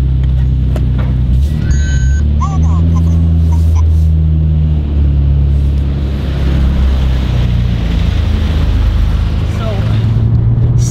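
The R34 Skyline GT-R's RB26 twin-turbo straight-six running, heard from inside the cabin as the car pulls out: a loud, low, steady drone that steps up in pitch about a second and a half in and shifts again a few seconds later. A short electronic beep sounds around two seconds in.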